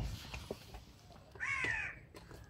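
A crow caws once, a single call about one and a half seconds in, after a short knock at the very start.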